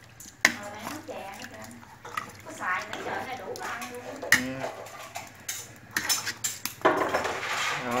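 Metal ladle clinking and scraping against an aluminium stockpot as it stirs pieces of boiled pork head in broth. Two sharp clinks stand out, about half a second in and about four seconds in, with a few lighter knocks a little later.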